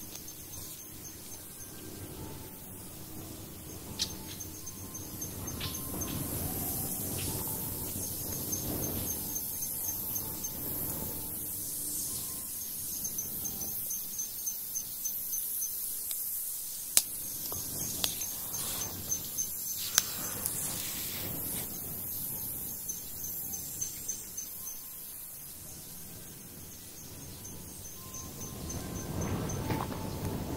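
Insects chirping in high, repeated trills over a steady hiss. A few sharp clicks sound now and then.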